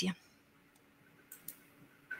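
A pause in conversation: near silence broken by two faint, short clicks about a second and a half in, a fraction of a second apart.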